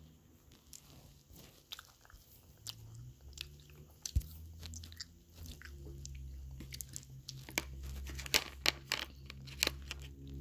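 A person chewing crunchy candy close to the microphone: a string of sharp crunches that come thicker in the second half, over a low steady hum.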